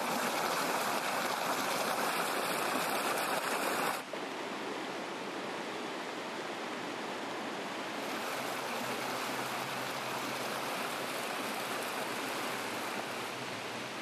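Muddy floodwater rushing fast, a loud, steady rush of water. About four seconds in it drops to a quieter, even rush as the floodwater spreads across flooded ground.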